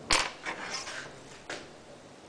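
Sharp clicks and light knocks from objects being handled, with a loud click just after the start, a few softer clicks and rustles, and another click about a second and a half in.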